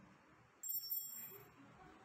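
A small metal piece clinks about half a second in, twice in quick succession, and rings with a high, bell-like tone that fades over about a second.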